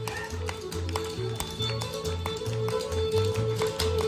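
Live bluegrass band playing an up-tempo tune: fiddle, acoustic guitar and banjo over a bass line that alternates between two low notes. Over it come the quick, sharp taps of dancers' shoes on a hard floor.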